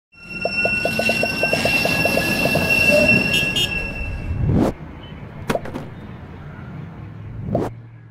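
Tram sound effect: wheels squealing on the rails with a quick clatter, ending about four and a half seconds in, followed by three whooshes.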